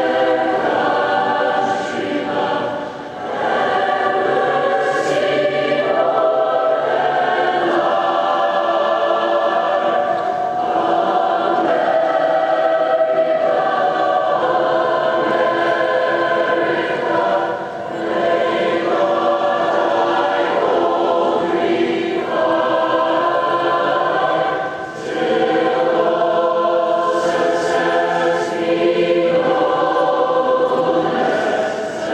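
Large massed student choir singing in long sustained phrases, with three short breaks between phrases.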